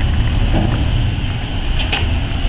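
Thames Clipper passenger catamaran's engines running as it pulls away from the pier, a steady low rumble with a higher hiss over it.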